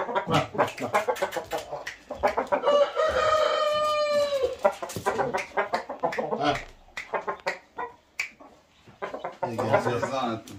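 Rooster crowing once, a long held call of about two seconds that starts about three seconds in and drops at the end, among short clicks and brief calls.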